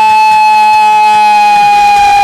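A Banjara bhajan singer holding one long, steady note into the microphone, the pitch sagging slightly near the end.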